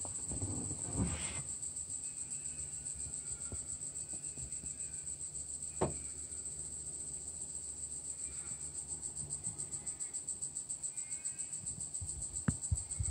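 An insect chorus: a steady, high, fast-pulsing buzz. A few knocks come just over a second in and near six seconds, with a faint low hum beneath.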